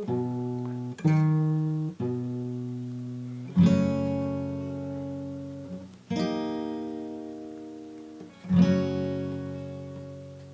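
Acoustic guitar with a capo on the neck, played slowly. In the first two seconds single plucked notes sound about once a second. Then three full chords follow about two and a half seconds apart, each left to ring out and fade.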